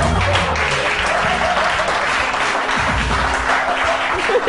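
Studio audience applauding over background music with a steady bass line.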